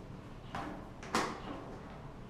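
Two knocks from an erhu bow being handled and set down, a softer one about half a second in and a sharper, louder one just after a second.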